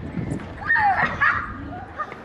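A child's brief, high-pitched excited squeal a little under a second in, its pitch bending and falling, while children go down a plastic playground slide.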